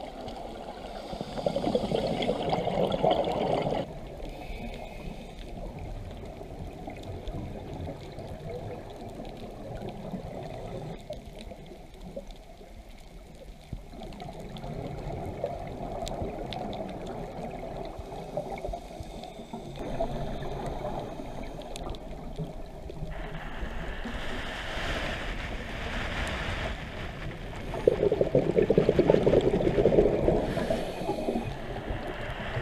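Muffled underwater noise picked up through a camera housing, with louder rushing, gurgling stretches of scuba exhaust bubbles from a diver's regulator about a second in and again near the end.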